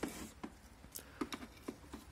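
Faint handling sounds: a brief rustle at the start, then a few light ticks and taps as a used rubber timing belt and engine parts are handled on a plastic case.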